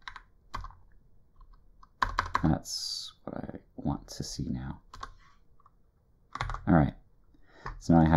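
Computer keyboard keys clicking in short runs of typing, with a man's voice saying a few indistinct words from about two seconds in.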